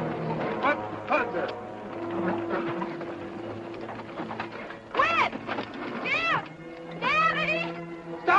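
Orchestral film score with held notes, overlaid by short shouted voices: one about five seconds in, another a second later and a third near the end.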